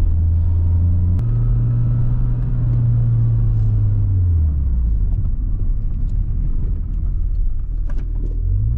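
Nissan 240SX's 2.4-litre four-cylinder engine with an aftermarket exhaust, heard from inside the cabin. About a second in, with a click, the engine note jumps up as a lower gear is engaged, then sinks gradually as the car slows on engine braking, dropping lower again about halfway through.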